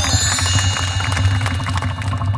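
Bright reveal jingle of chiming bells and glockenspiel-like sparkle, with a short falling glide at the start, over a steady low hum.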